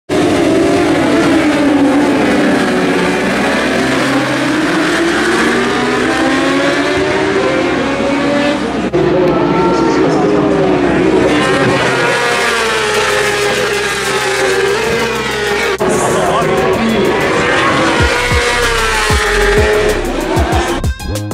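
A field of 1000cc superbikes racing, several engines revving at once with their pitch rising and falling. The sound breaks off and resumes suddenly about 9 and 16 seconds in, and a low music beat comes in near the end.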